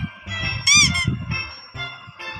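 Light children's background music with a short, high, squeaky cartoon sound effect that wavers in pitch, about three-quarters of a second in, marking the change to the next picture.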